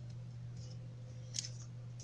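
A steady low hum, with one brief, faint scrape of paper about one and a half seconds in, as a hand moves over a paper worksheet on a table.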